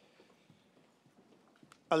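Faint taps of shoe heels on a stage floor over quiet hall ambience, then a voice starts reading out the next graduate's name near the end.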